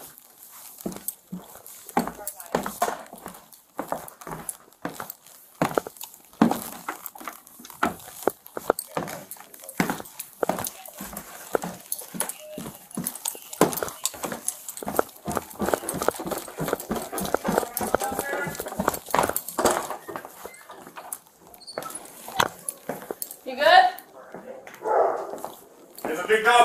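A dog barking repeatedly, shut in a kennel, amid many short knocks and clatters.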